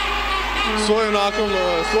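A man's voice giving live sports commentary, talking mid-sentence.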